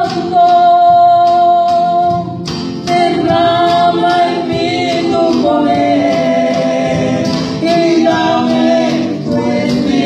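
Live Pentecostal praise song: several singers, women and a man, singing together in long held notes over a church band with drums. Near the start one long note is held, then the singing picks up again after a short break.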